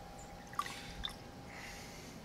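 A cheesecloth bundle of vinegar-soaked mash being squeezed by hand, the strained fire cider dripping through a plastic funnel into a quart mason jar. There are a couple of faint wet squishes and drips, about half a second in and again at about a second.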